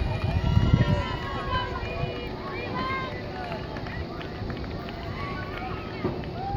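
Many overlapping high-pitched voices of young spectators calling out and chattering at once, with no clear words.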